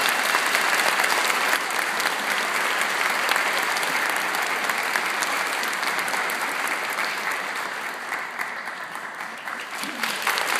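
Audience applauding, a steady dense clapping that eases slightly near the end.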